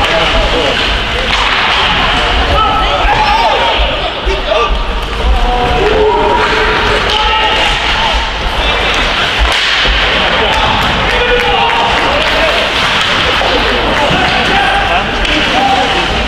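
Ice hockey play in an indoor rink: skates scraping on the ice, sticks and puck clacking with the odd thud against the boards, and players shouting calls to each other, with the rink's echo.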